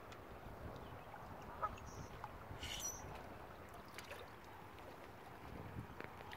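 Faint lakeshore quiet: small waves lapping against the shoreline rocks, with one short waterfowl call about halfway through.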